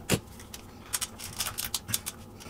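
Plastic hair dryer housing being handled to pry it open: a string of short, sharp plastic clicks, one just after the start and a quick cluster in the second half.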